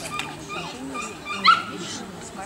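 A dog gives one short, sharp, high yip, rising in pitch, about one and a half seconds in.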